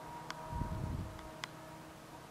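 A distant passenger train running along the line: a faint steady hum with a brief low rumble about half a second in and two faint clicks.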